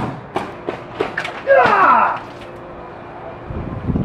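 A spear blade cutting into a gel head target, with several sharp knocks in the first second or so, followed by a man's loud shout that falls in pitch. A low thud comes near the end.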